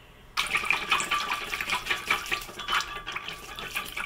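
A whisk stirring melted cocoa butter and oil-based food colour in a glass measuring jug: quick liquid sloshing with many light clicks, starting about a third of a second in.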